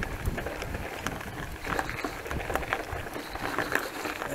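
Mountain bike rolling over a rough, grassy dirt path, picked up by a camera mounted on the handlebars: irregular rattles and knocks as the bike jolts over bumps, over a low rumble.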